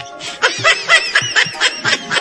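A rapid run of high-pitched giggling laughter in short quick bursts, starting a moment in, over background music.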